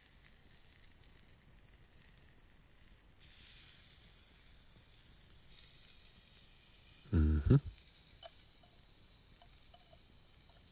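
Pizza crust frying in a cast iron skillet over a campfire, sizzling steadily while sauce is spread over it with a spoon. A short voice-like sound comes about seven seconds in.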